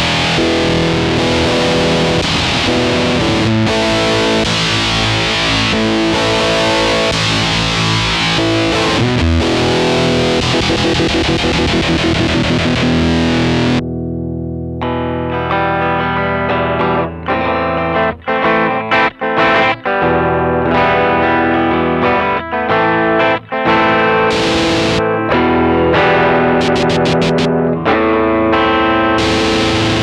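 Electric guitar played through a Stone Deaf Rise & Shine fuzz pedal, with thick, hissy fuzz for the first half. About 14 seconds in the tone changes abruptly to a darker, more defined fuzz, with short breaks between phrases for a while after.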